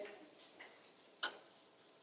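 A pause in speech: quiet room tone with one short, faint click a little past the middle.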